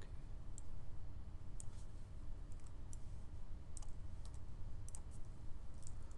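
Sharp clicks of a computer mouse and keyboard, about a dozen spread irregularly, some in quick pairs, over a steady low hum.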